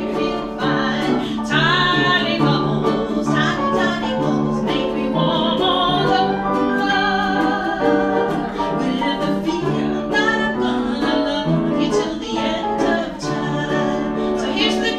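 A woman singing a Hawaiian song into a microphone, accompanied by strummed ukulele and grand piano.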